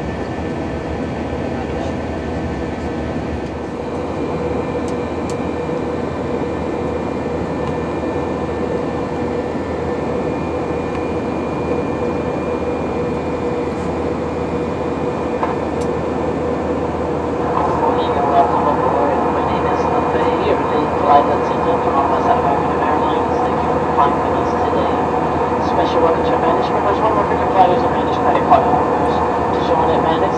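Steady jet engine and airflow noise inside the cabin of an Airbus A319 climbing after takeoff, with a constant hum. From about halfway through, a flight attendant's announcement over the cabin speakers is heard on top of it.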